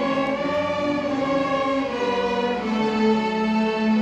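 A student string orchestra of violins, cellos and double bass playing slow, sustained chords, each held for a second or more before moving to the next.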